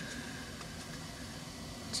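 Steady background hum and hiss of room noise, with a faint thin tone running through it.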